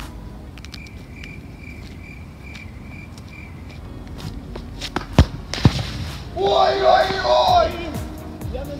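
A football struck hard about five seconds in, with a second sharp thud half a second later, then a loud shout lasting about a second.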